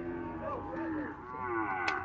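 Cattle mooing, several calls overlapping.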